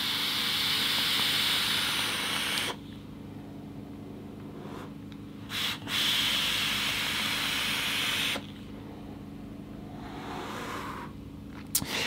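Vape mod firing at 120 W through an RDA with 0.1-ohm alien coils: each drag makes a hissing, sizzling draw of air and vapour. There are two long drags of about two and a half seconds, the second about six seconds in, and a fainter, shorter hiss near the end.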